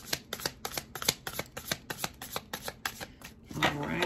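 A deck of oracle cards being shuffled by hand: a quick, irregular run of card flicks and clicks, several a second, with cards slipping out and dropping onto the cards on the table.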